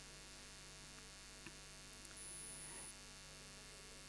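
Near silence with a steady low mains hum and faint hiss from the microphone and amplifier system.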